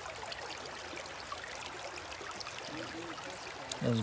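Steady rush of running creek water, with a few faint clicks.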